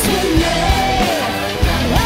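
Rock band music with a drum beat under a held melodic line that slides between notes.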